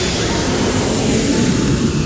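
Steady noise of a jet airliner in flight, engines and rushing air heard from inside the passenger cabin.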